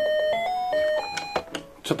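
Anpanman Yokubari Table toy playing a quick electronic melody in clean, beep-like notes through its small speaker. The tune stops about one and a half seconds in.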